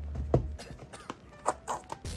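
A handful of short, sharp clicks and crinkles from a shrink-wrapped cardboard trading-card blaster box being handled, the loudest about a third of a second in. A low background music bed stops about half a second in.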